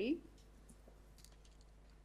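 A woman's voice trails off just after the start, then near-quiet with a few faint, scattered clicks over a steady low hum.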